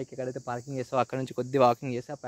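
A man talking continuously over a steady, high-pitched insect chorus.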